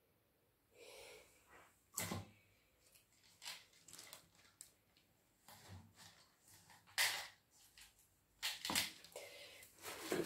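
Faint, scattered clicks, ticks and a brief rustle of small objects being handled, with sharper ticks about two, seven and nearly nine seconds in.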